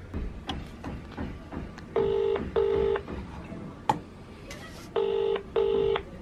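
British double-ring ringback tone from an iPhone on speakerphone while a call rings out: two "brr-brr" pairs of steady tone, about three seconds apart. A few light clicks fall between them.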